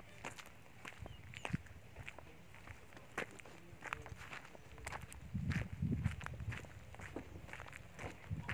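Footsteps crunching on a gravel and dirt path, short irregular steps, with a louder low rumble a little past halfway.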